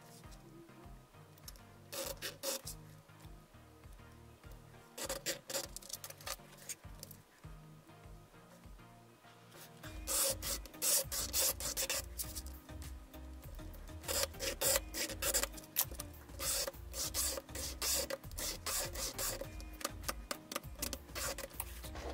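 A pointed scribing tool scratching a 1 mm plastic sheet along a ruler to score it for cutting. A few separate scratches come in the first half, then rapid, repeated scraping strokes start about ten seconds in.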